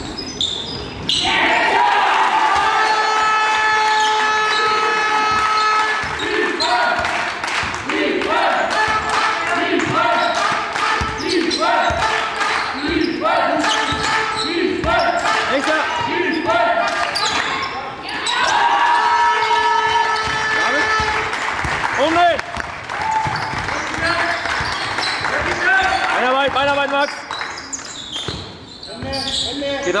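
A basketball game in a large sports hall: the ball bouncing on the court floor amid the players' movement. Loud voices ring out over it, with long held calls and shorter calls repeated about once a second.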